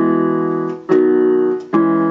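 Electronic keyboard in a piano voice playing block chords. Three chords are struck in turn about a second apart, each held until the next. The first is the A major chord (A, C sharp, E).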